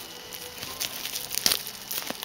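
Plastic wrapping on a pin package crinkling as it is handled, with a few sharp clicks, the loudest about one and a half seconds in.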